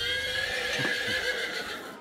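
A horse whinnying once, a long call with a wavering pitch that fades out near the end.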